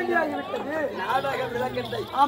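Speech: a performer's voice delivering stage dialogue, with other voices chattering behind.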